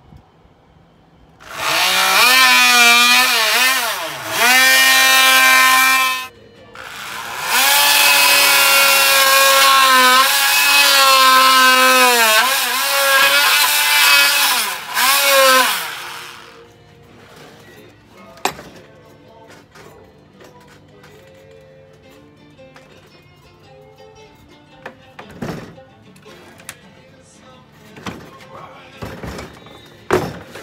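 Corded handheld electric grinder or sander working carved wood, its motor pitch sagging and recovering as it is pressed into the wood. It starts about a second and a half in, stops briefly near six seconds, runs again and cuts off about sixteen seconds in, leaving only a few faint knocks.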